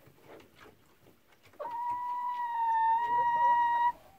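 A single long, steady, high whining call from an animal, starting about a second and a half in, holding one pitch for a little over two seconds and cutting off sharply near the end, over faint scattered clicks and scratches.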